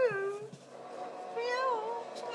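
Domestic cat meowing: a short meow right at the start and a longer meow with a wavering pitch near the end.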